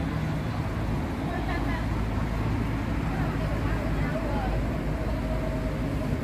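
Steady low rumble of city traffic with faint, indistinct voices, and a faint held tone over the second half.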